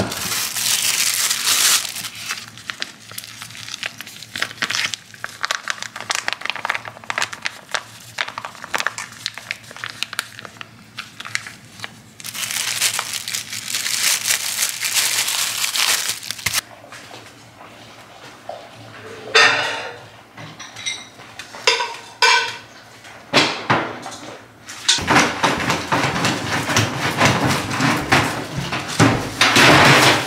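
Dog food being handled in a stainless steel bowl: dry kibble rattling and clinking against the metal, with a plastic bag of soft food rustling as it is squeezed out. Near the end comes a longer, louder stretch of plastic rustling as a trash bag is pulled from the bin.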